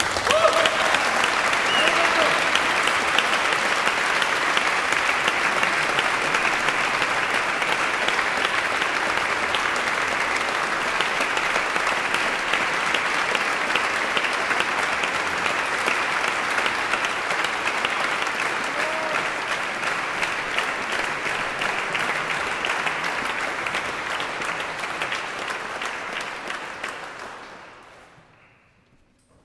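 Audience applauding steadily, the clapping starting abruptly and fading out near the end.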